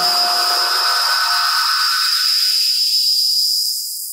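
Closing tail of an electronic dance track. After the beat has dropped out, a steady synthesized hiss carries a high whistling tone. Its low end thins away progressively as the sound starts to fade near the end.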